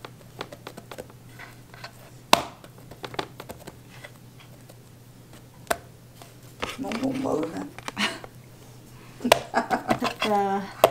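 Hands shaping bread dough on a bamboo cutting board: scattered light taps and knocks, the sharpest about two seconds in, over a faint steady hum. A brief murmur of voice comes near the middle.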